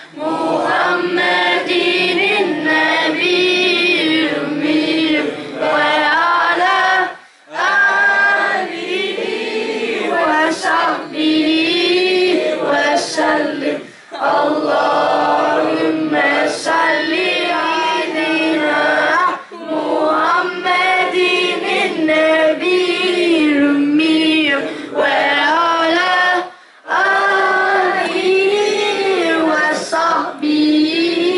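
A group of young voices singing a salawat together, unaccompanied, in long phrases with short breaks about every seven seconds.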